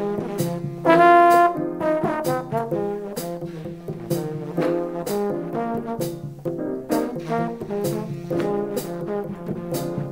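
Jazz recording: a horn plays a melodic line of short notes over a walking bass, with sharp percussion strikes at a steady beat.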